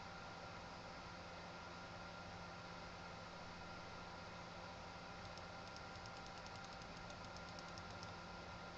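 Faint steady hiss and electrical hum of the recording, with faint rapid ticking of a computer mouse scroll wheel from about five seconds in as the document is scrolled and zoomed.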